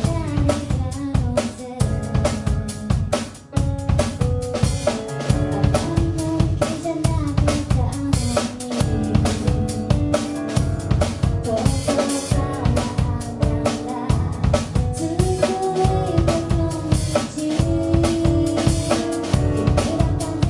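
A live rock band playing a song: drum kit with kick and snare driving a steady beat, electric bass, electric guitar and keyboard, with a woman singing. The sound drops briefly about three and a half seconds in.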